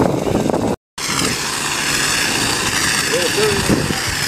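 Handheld fire extinguisher discharging at a burning training pan: a steady hiss, cutting out for a moment just before a second in. Faint voices near the end.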